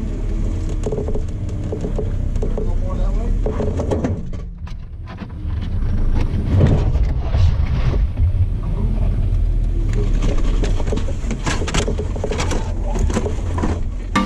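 Jeep Wrangler's engine running low and steady as it crawls over rock, easing off briefly about four seconds in and picking up again, with repeated knocks from the tires and chassis on the rock in the second half.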